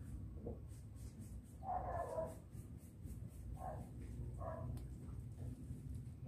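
About four short animal calls, the loudest about two seconds in, over a low steady rumble.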